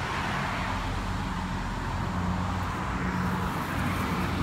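Steady motor-vehicle engine hum with road noise, a little brighter in the first second.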